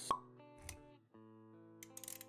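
Logo-intro music and sound effects: held synth notes with a sharp pop just after the start, the loudest sound, then a soft low thud a little later. After a brief gap near the middle the notes resume, with quick clicks near the end.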